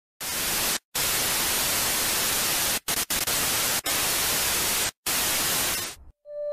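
Television static: a loud, even hiss of white noise that starts abruptly and cuts out in short dropouts about a second in, twice near three seconds, near four seconds and near five seconds.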